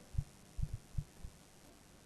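A run of soft, dull thuds, about five in the first second and a bit, each short and low-pitched, over faint room hiss.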